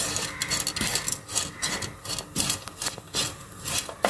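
Spatula scraping and stirring grated coconut, shallots and spices as they dry-roast in a pan, in quick, repeated rasping strokes. This is the roasting of the coconut for a roasted-coconut curry masala.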